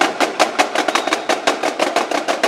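Marching snare drums of a drumline playing an even, fast stream of sharp strokes, about five or six a second.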